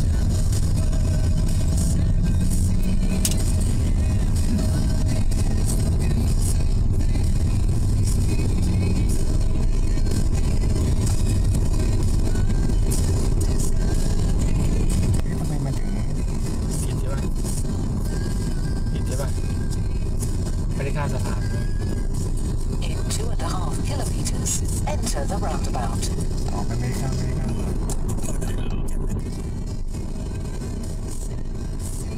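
Steady low road and tyre rumble heard from inside a car cabin while driving through a rock tunnel. It drops a step in level about halfway through and again near the end, as the car comes out into the open.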